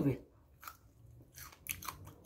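Faint, crisp crackles of raw celery being bitten and chewed: one short crunch about a third of the way in, then a few more close together near the end.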